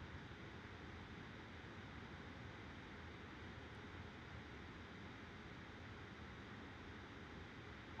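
Near silence: a faint, steady background hiss of room tone.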